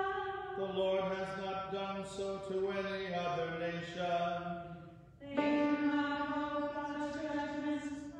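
A man and a woman singing a slow melody together in long held notes. There is a brief break for breath about five seconds in before the next phrase.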